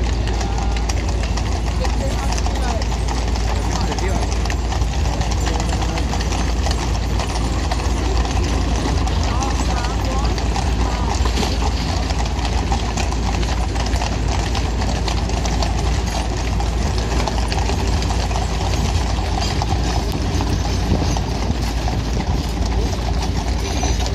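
Busy street ambience: people talking nearby over a steady low rumble, with frequent small clicks and taps.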